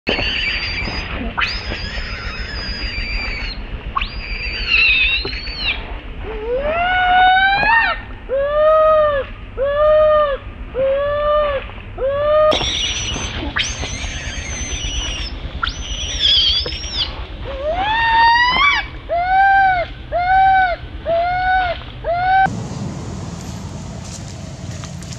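Baby macaque screaming and crying in distress: high-pitched drawn-out screams, then a rising wail, then a string of short arching cries about one a second. The sequence comes twice, and a steady outdoor hiss takes over after a sudden cut near the end.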